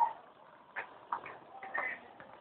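A skateboard rolling on concrete, giving a few faint clicks and knocks about half a second apart.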